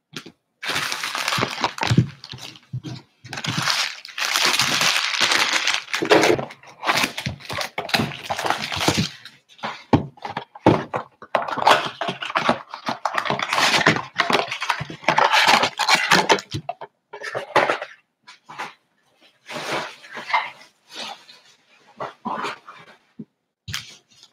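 A cardboard blaster box of trading cards being torn open by hand, with crinkling plastic wrap and foil packs being handled. Long stretches of tearing and crackling fill the first two-thirds, then shorter, scattered rustles follow.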